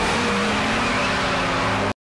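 Stock sound effect of a car engine and exhaust running loud and steady, its engine note easing slightly down in pitch, cut off abruptly near the end.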